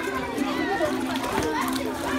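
Young children's voices at play: high-pitched calling and chatter, with no clear words.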